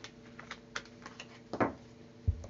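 Tarot cards being gathered up and stacked by hand on a table: a scatter of light clicks and taps, with one louder, downward-sweeping sound about one and a half seconds in.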